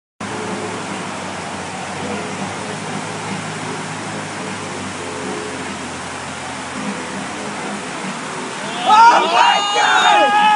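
Steady rush of splashing water from a mini-golf water fountain. Near the end, people break into loud shouting over it.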